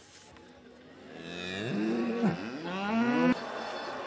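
Cattle mooing twice: a long call that rises and then holds, starting about a second in, followed by a second call that cuts off suddenly a little after three seconds.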